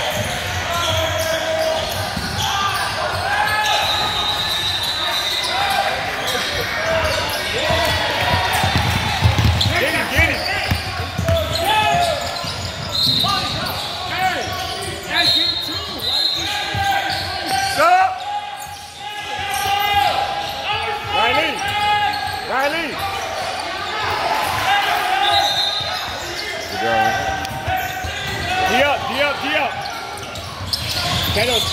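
Basketball game in a gym: the ball bouncing on the hardwood court and sneakers squeaking, mixed with voices of players and spectators echoing in the large hall.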